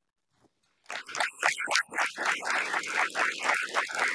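Audience applauding: many hands clapping, starting about a second in after a short silence and carrying on steadily.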